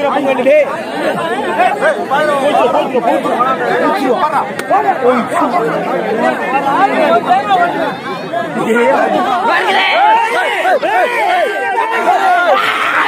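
Dense crowd chatter: many voices talking and calling out at once, overlapping, with higher raised voices coming in toward the end.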